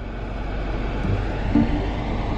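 Car running slowly on a rough dirt track, heard from inside the cabin: a steady low rumble of engine and tyres.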